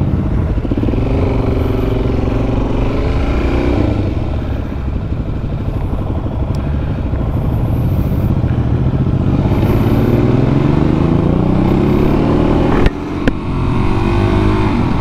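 Suzuki DR-Z400SM's single-cylinder four-stroke engine pulling away and accelerating, its pitch climbing steadily, then breaking briefly near the end at a gear change.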